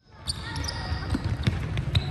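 Netballs bouncing and thudding on a wooden indoor court, several sharp knocks over a low hall rumble, with voices in the background of a large arena.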